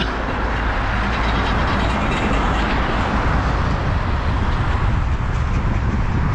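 Steady wind rushing over the microphone of a paraglider pilot's action camera during descent, with a heavy low rumble.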